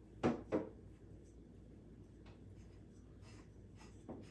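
A sheer curtain being gathered onto a wooden rod: two quick, loud rustling knocks of fabric and wood close together near the start, then faint handling sounds.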